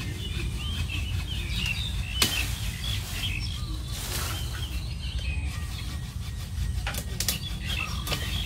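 Small birds chirping and twittering steadily, with a few sharp snips of pruning shears cutting twigs: about two seconds in, near four seconds, and twice close together about seven seconds in.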